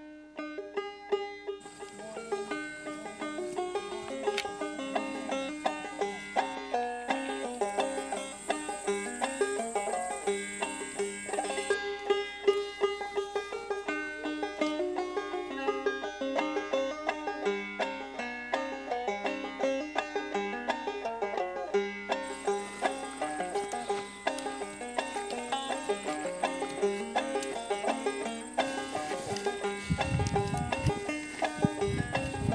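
Background music: a banjo tune with quick, steadily picked notes.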